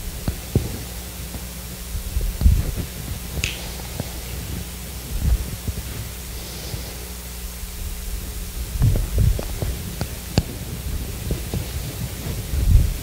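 Steady low hum with scattered soft low thuds and two sharp clicks, about three and a half seconds in and near the end.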